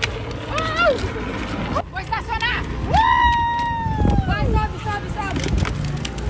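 Hard plastic wheels of a drift trike rolling over pavement with a low rumble, under shouted calls and one long, high yell that falls away at its end about three to four seconds in.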